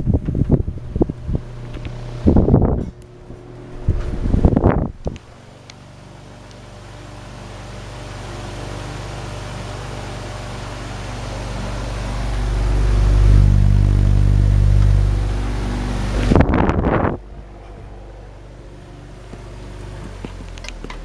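Electric desk fan with a metal wire guard running: a motor hum and rushing air that start about five seconds in and grow louder, then drop to a lower level after a burst of clatter near the end. Knocks and handling clatter come before the fan is heard.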